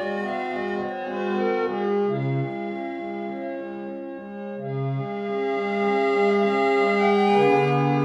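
A 19th-century French harmonium, attributed to H. Christophe & Etienne of Paris, c.1868, playing a slow passage of held chords on its free reeds, blown by foot-pedalled bellows. It grows louder in the second half.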